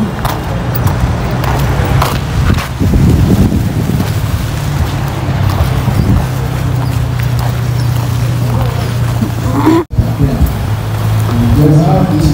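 Outdoor background noise with indistinct voices and a steady low hum, broken by a brief dropout about ten seconds in.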